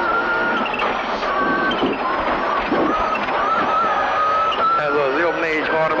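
Cockpit sound of a Subaru Impreza WRC on a rally stage: its turbocharged flat-four engine running hard at speed in a steady high note. The co-driver's voice reading pace notes comes in near the end.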